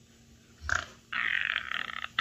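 A woman laughing breathily with her mouth open: a short burst about two-thirds of a second in, then a longer hissing breath of laughter from about a second in.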